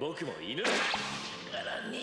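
Anime soundtrack: a brief Japanese voice line, then a sharp whip-like whoosh sound effect about half a second in, trailing off as more dialogue follows.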